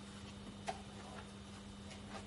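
Gloved hand swabbing antiseptic over the plastic skin of a chest-drain training manikin, giving a few faint clicks and taps, the sharpest about two-thirds of a second in, over a steady low hum.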